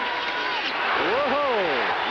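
Football stadium crowd noise during a live play, with a man's voice calling out in rising and falling pitch in the second half.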